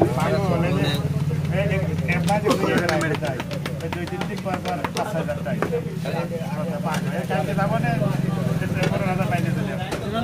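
People talking over a steady low hum like an idling engine, with a run of sharp clicks a couple of seconds in.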